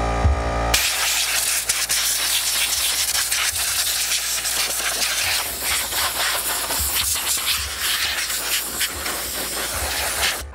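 Compressed air from an air-compressor blow gun blasting into a PC case: a loud, steady hiss that starts abruptly about a second in and runs on with small flutters as the nozzle moves around the cables. Before it, a steady motor hum is heard briefly.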